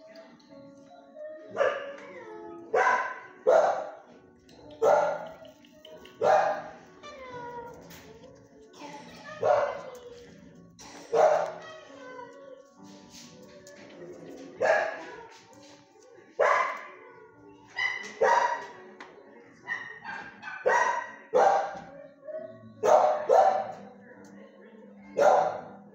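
Dog barking repeatedly, about twenty loud barks spaced irregularly around a second apart, each dropping in pitch.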